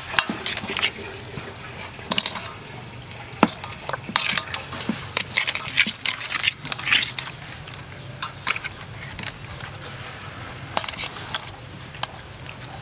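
Hands rubbing and squeezing whole chickens in a metal basin: irregular wet squishing and slapping of the skin, with sharp knocks now and then as the birds or fingers hit the bowl.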